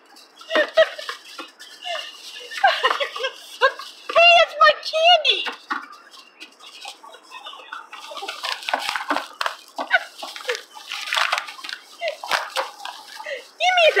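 Short, high, wavering vocal calls come and go, the strongest about four seconds in and near the end. In the middle, paper bags rustle and crinkle.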